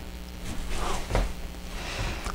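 Faint brush strokes of a watercolor brush on hot-press paper, two soft brushing sounds about half a second and a second in, over a steady low room hum.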